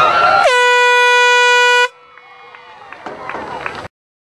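Crowd voices, then about half a second in a horn blares once for about a second and a half, a single steady tone that dips slightly in pitch as it starts and cuts off sharply.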